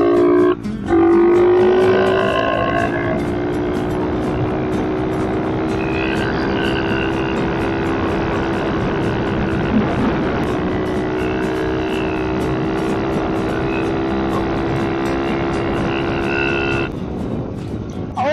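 SSR 110cc four-stroke pit bike engine running at a steady cruising pitch, picked up close by a helmet mic, with a brief drop in revs just under a second in and a change near the end.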